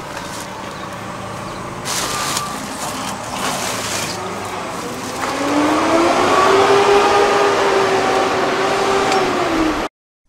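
Outdoor traffic noise with a few knocks. About halfway through, a vehicle engine's pitch rises and then holds steady before the sound cuts off suddenly.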